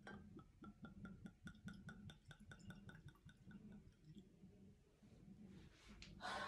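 Red wine being poured from a bottle into a stemmed glass: a faint, quick run of small glugs and splashes that stops about three seconds in.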